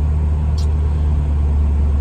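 Semi truck's diesel engine idling, heard from inside the cab: a loud, steady low drone.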